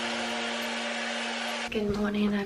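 Tap water running steadily into a bathroom sink, under one held note of background music. Both cut off near the end, when a woman's voice begins.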